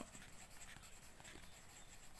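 Faint scratching of a pen writing on a paper textbook page.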